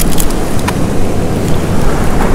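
Wind buffeting the microphone: a loud, uneven, low rumble, with a couple of light clicks in the first second.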